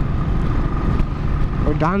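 Motorcycle cruising steadily on a highway: an even engine drone with a faint steady whine, under a low rumble of wind and road noise. A man starts speaking near the end.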